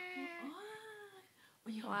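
A baby's drawn-out whiny vocalising: one long held note, then a shorter one that rises and falls. Near the end an adult's voice comes in.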